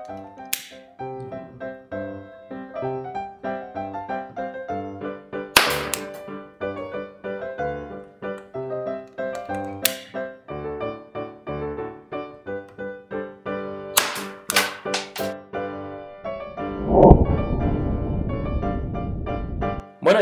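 Background music, broken by sharp cracks as the match-head charges of a homemade mini rocket launcher go off and fire its wooden skewer-tip projectiles: one loud crack about six seconds in and three in quick succession around fourteen seconds. A loud rushing burst of noise follows near the end.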